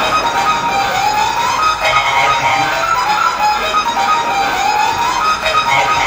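Electronic game-style music playing loud and steady, with a siren-like tone rising in pitch twice, about three seconds apart.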